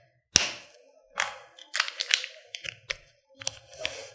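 A series of irregular sharp clicks and taps from a small hand-held object being handled, the loudest about a third of a second in and a quick cluster around the middle.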